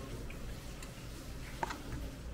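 Metal chopsticks clicking lightly against a stainless-steel bowl while noodles are mixed, over a low steady room hum. One sharper click comes near the end.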